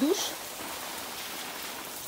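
Water from a garden hose spraying down over potted citrus trees: a steady hiss and patter of water falling on the leaves.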